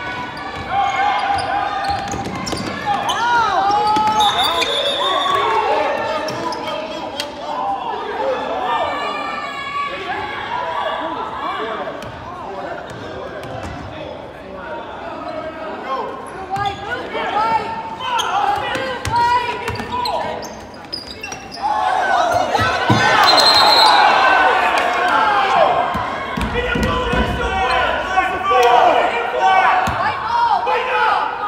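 A basketball bouncing on a hardwood gym floor during play, mixed with the voices of players and spectators, all echoing in a large gymnasium. The noise grows busier and louder for a few seconds about two-thirds of the way through.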